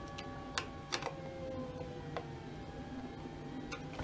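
A handful of light, sharp clicks, scattered and unevenly spaced, from a screwdriver snugging the speaker screws on a plastic control-box mount of a Garrett AT Pro metal detector. Faint steady tones hum underneath.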